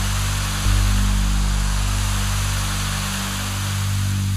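A sustained low electronic chord from a V-Accordion and backing-module rig, held under a steady hiss. The bass notes shift once, about two-thirds of a second in.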